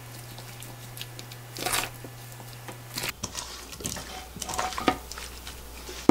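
Faint, scattered kitchen handling sounds of kkakdugi: wet, seasoned radish cubes squishing as gloved hands scoop them between a stainless steel bowl and a plate, with a sharper knock about three seconds in and a few light clicks after it.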